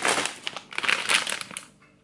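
Crinkling of a shiny plastic snack bag of Flipz pretzels as it is picked up and handled, dying away about a second and a half in.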